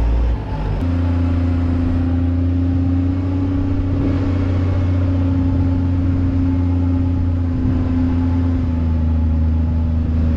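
Diesel engine of a New Holland wheel loader running steadily as the loader drives back and forth packing a silage pile. The sound dips briefly just before the first second.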